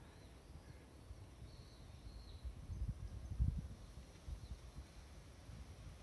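Quiet outdoor ambience: irregular low rumbling bumps on the microphone, loudest about halfway through, with a few faint high bird chirps early on.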